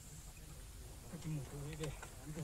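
A near-silent pause, then from about a second in a man's voice speaking faintly, low in the mix.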